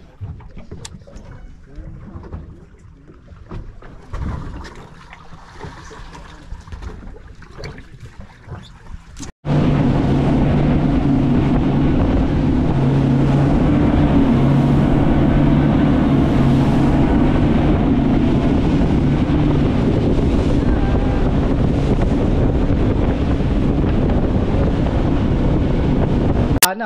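For the first nine seconds, wind buffeting the microphone on an open boat deck with faint sounds underneath. Then, after a sudden cut, a fishing boat running at speed: the steady drone of its engines under loud rushing wind and water spray from the wake.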